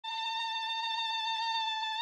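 A single electronic tone held steady at one pitch, rich in overtones.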